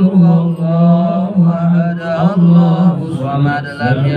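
Men chanting a devotional Islamic recitation (dhikr) through a microphone, one man leading, in long, steady drawn-out notes with brief breaths between phrases.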